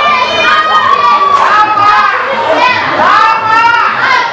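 Ringside crowd shouting: several voices yelling loudly over one another, with no pause.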